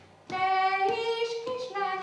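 A woman singing a Hungarian folk song solo and unaccompanied. After a short breath at the start she holds long notes that step up and down in pitch.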